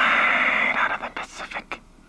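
A man's voice drawing out a loud, breathy whooshing hiss, as if imitating something being sucked up, then a few quick spoken words.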